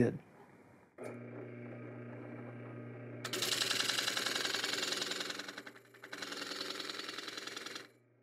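Drill press motor with a rosette cutter in the chuck running steadily, coming in about a second in. From about three seconds in, the louder hiss of the cutter blades routing a circular rosette channel into plywood joins it, easing briefly near six seconds, before all the sound stops abruptly near the end.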